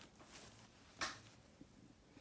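Fabric being handled by hand: a soft, brief rustle about a second in over quiet room tone.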